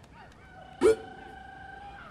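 A single note on an amplified stage instrument, struck sharply about a second in and held steady for about a second. Faint fading crowd whoops can be heard before it.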